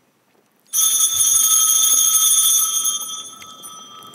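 A small altar bell struck once, its high ringing tones holding for about two seconds and then dying away.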